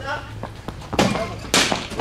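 Cricket ball bowled and played in an indoor practice net: two sharp knocks about half a second apart as the ball meets the pitch matting and the bat.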